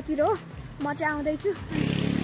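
A boy's voice talking, and nothing else stands out; a denser, lower, steadier sound comes in just before the end.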